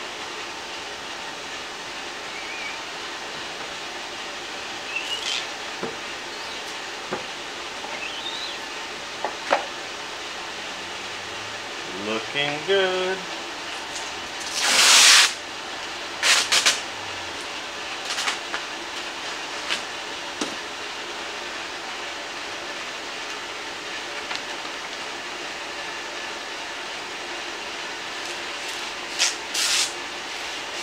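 Clear transfer tape pulled off a big roll in one long, loud rip about halfway through, followed by a couple of shorter rips, over a steady background noise with a few light knocks.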